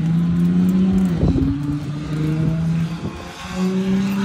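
A motor vehicle's engine running, loud and steady, its pitch shifting about a second in and stepping up near the end.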